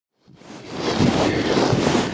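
Wind noise on the microphone: a steady rushing hiss that fades in from silence over about the first second.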